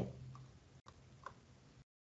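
Near silence: faint room tone with two small ticks, then the sound cuts off to dead silence near the end.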